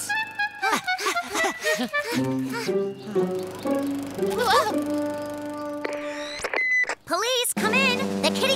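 Cartoon background music with held, stepping notes, with cartoon characters' voices laughing and exclaiming "whoa". The sound breaks off for a moment near the end.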